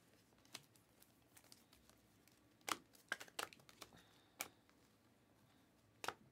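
Glossy trading cards being handled and flipped through by hand: a few faint, scattered clicks and snaps of card stock sliding off a stack, a short cluster of them between about two and a half and four and a half seconds in.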